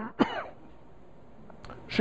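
A man's dry coughs, two short ones in quick succession at the start, followed by quiet room tone.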